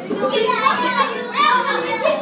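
A young girl's voice, loud and lively, with other children's voices around her.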